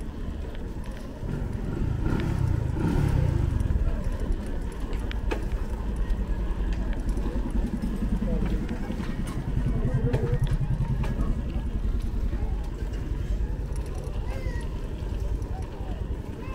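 Street ambience: a motorbike engine passes close by twice, swelling about two seconds in and again around eight to eleven seconds, over a steady low rumble, with people's voices nearby.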